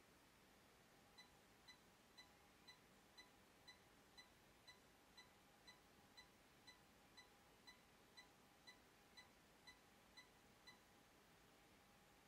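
Near silence with faint short beeps about twice a second. These are the 1 kHz burst test signal the Crown XLS 2000 amplifier is driving, pushed to the edge of clipping, and they come faintly from the test rig.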